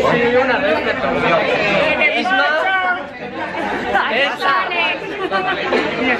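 Group chatter: several people talking over one another in a crowded room, with no single voice standing out.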